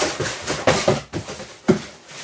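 Cardboard boxes scraping and rubbing together as a box is lifted and moved out of a larger cardboard shipping box, with a sharp knock near the end.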